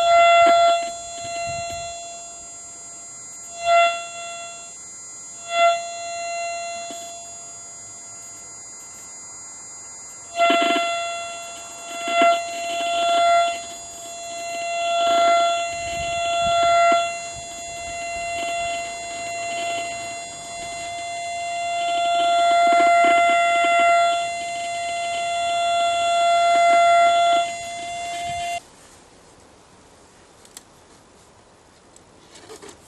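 Steady single-pitch tone of a German WW2 radiosonde's signal, heard through a Fu.H.E.c receiver as it is tuned. The tone's frequency is set by the sonde's temperature sensor. It comes first as a few short blips, then in long swells and fades, and cuts off near the end.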